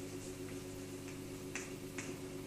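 Steady low hum and hiss of an old tape recording, with a few faint sharp clicks, the clearest about one and a half seconds in and just before the end.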